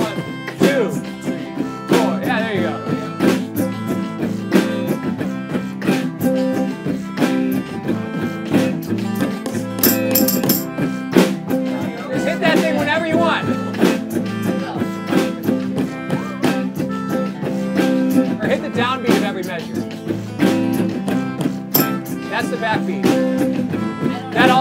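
Informal group jam: electric and acoustic guitars strum a repeating one-bar C to one-bar A minor progression over a steady backbeat, with a melodica joining the melody.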